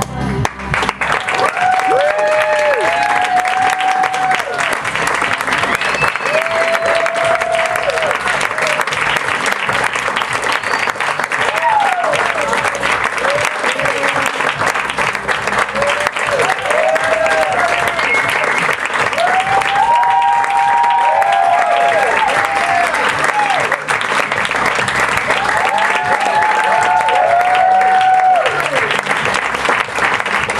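Theatre audience applauding steadily for the cast at a curtain call, with scattered cheers and whoops over the clapping.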